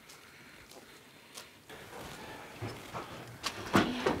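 Quiet footsteps on a paved path, then two sharp knocks near the end as a decoration is lifted onto a window sill.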